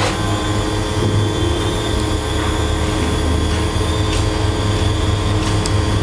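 A steady mechanical drone with a low hum, even in level and pitch throughout.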